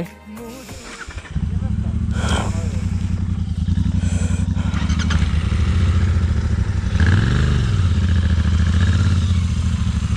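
Royal Enfield 650 parallel-twin motorcycle engine on its stock exhaust starting up about a second in and running at idle, with a brief rev around seven seconds in.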